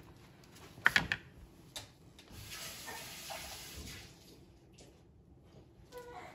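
A couple of sharp knocks about a second in, then a kitchen tap runs for about two seconds while a kitchen knife is rinsed clean.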